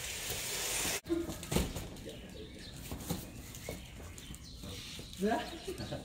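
A loud hiss-like noise that cuts off suddenly about a second in, then quiet street ambience with a few faint knocks. Near the end a man gives a short exclamation, "aiya", while carrying boxes.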